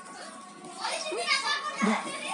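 Children's voices, louder from about a second in.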